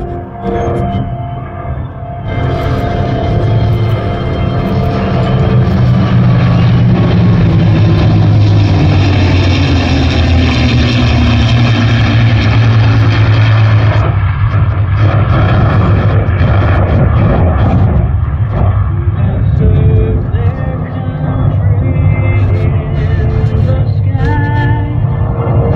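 Engine noise of an F-35A jet flying in formation with three P-51 Mustang piston-engine fighters, rising about two seconds in and staying loud, heard over music that plays throughout.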